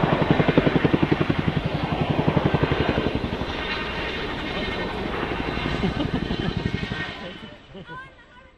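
Boeing CH-47 Chinook tandem-rotor helicopter passing close with a rapid, even beat from its rotor blades. The beat is loudest in the first few seconds, then weakens as the helicopter draws away, and the sound fades out about seven seconds in.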